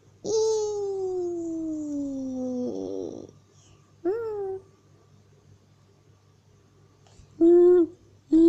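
A young child's wordless voice: one long falling vocal sound lasting over two seconds, then a short rising-and-falling one, then two short sung notes near the end.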